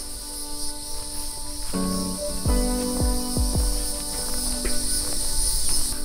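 A steady high-pitched insect chorus, with background music coming in about two seconds in: held notes and a few deep bass drum hits.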